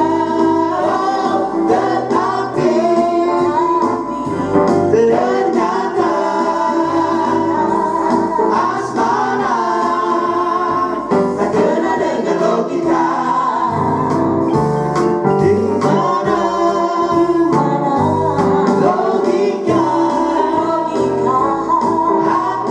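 A mixed vocal group of three men and a woman singing a song together into microphones, over a steady instrumental backing.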